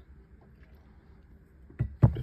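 Quiet room tone with a faint low hum, then a short, low thump near the end.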